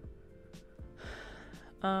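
Faint background music with a few soft clicks, then a breath drawn in about a second in, just before a woman's voice starts near the end.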